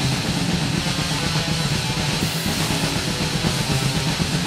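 Crust grind band recording playing: distorted guitars and bass over fast, dense drumming, the whole mix loud and unbroken.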